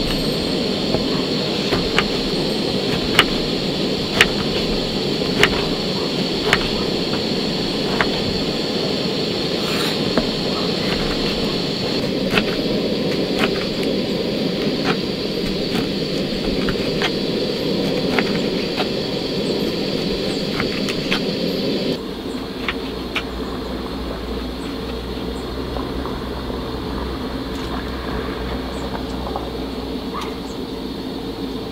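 A kitchen knife slicing oranges on a wooden cutting board: irregular sharp taps of the blade on the board, about one a second, over the steady hiss of a portable gas-canister stove burner. About two-thirds of the way through, the steady noise drops suddenly to a quieter, lower hum, and the taps thin out.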